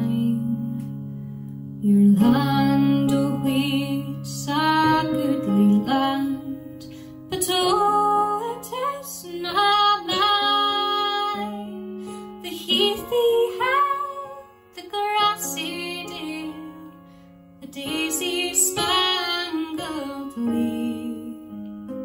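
A woman singing a slow Scots folk ballad, phrase by phrase with short breaths between, over instrumental accompaniment of low chords held for several seconds at a time.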